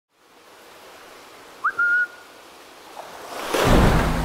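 A short whistle about one and a half seconds in, a quick upward slide followed by a brief held note, over a faint steady hiss. Near the end a rising whoosh swells into loud drum-heavy intro music.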